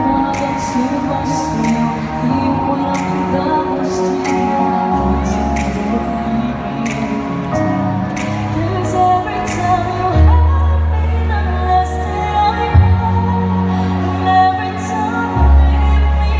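A woman singing a slow pop song into a microphone over a backing track with sustained bass notes and a steady high percussion beat, played through PA speakers.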